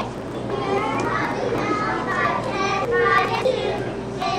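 Many young children's voices at once, chattering and calling over one another.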